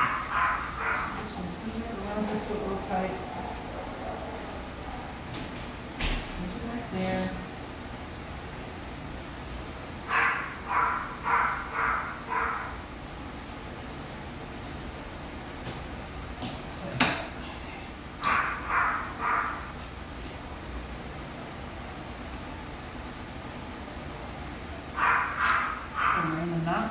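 Grooming scissors snipping a dog's coat in short runs of four or five quick cuts, with pauses between the runs. There are a couple of sharp single clicks in the pauses.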